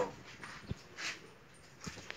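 A dog making a few faint, short sounds, with a couple of light clicks among them.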